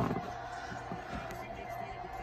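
A football broadcast playing from a television: stadium crowd noise with faint commentary, briefly louder at the start and then steady.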